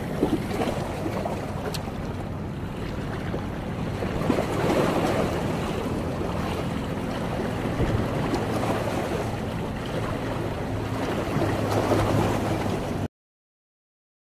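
Sea waves washing against the rocks of a breakwater, with wind on the microphone and a faint steady low hum underneath. The sound cuts off abruptly about a second before the end.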